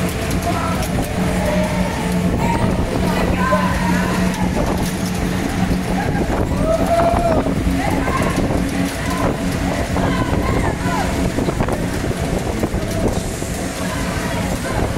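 Taiga Jet fairground ride running, its drive machinery giving a steady low hum under the rush of the swinging gondolas, with voices from riders and onlookers over it.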